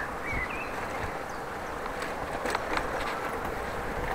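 Steady rolling noise of a bicycle ride picked up by the camera's microphone: wind rush and tyres on the path, with a few faint clicks and rattles.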